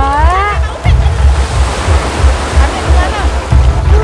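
Small waves washing onto a sandy shore, over the steady low beat of background music.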